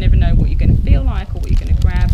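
A woman talking, with wind rumbling on the microphone.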